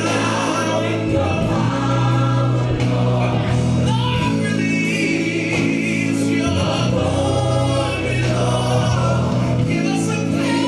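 Recorded gospel music: a choir singing over sustained bass notes, steady and loud throughout.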